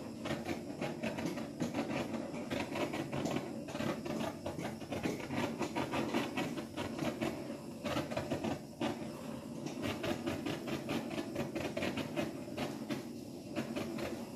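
Handheld butane torch flame burning steadily with a rushing hiss and a fine crackle, played over wet acrylic pouring paint to pop bubbles and bring up cells.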